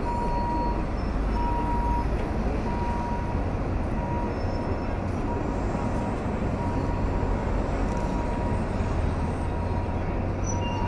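Busy city-street traffic and crowd noise, a steady low rumble of engines and passing people, with a faint tone beeping on and off about once every second and a bit.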